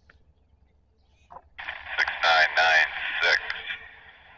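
A voice coming over a railroad scanner radio: about one and a half seconds in, the squelch opens with a hiss and a thin, tinny transmission of speech follows.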